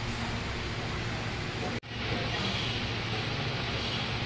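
Steady background room noise with a low hum, no speech. It cuts out for an instant a little under two seconds in, then carries on.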